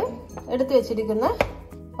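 A person's voice, with pitch shifting and breaking like talk or singing, followed by a single sharp click about one and a half seconds in.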